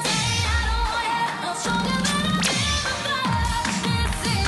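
Pop dance track played for a cheerleading routine, with singing over repeated deep falling bass drops and a sharp hit about halfway through.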